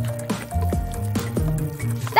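Background music, with several short, falling squishy drip sounds as clear glue is squeezed from a bottle into a pen casing.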